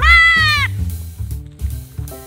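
A goat bleats once, a single high call of under a second that rises and falls, right at the start. Background music with a steady beat plays throughout.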